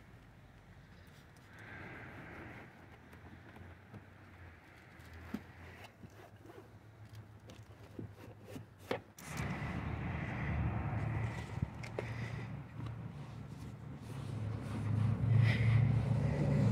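Light handling and rubbing sounds with a few small clicks as a car's door panel is wiped down. About nine seconds in, a louder, steady low rumble of a motor vehicle sets in and grows.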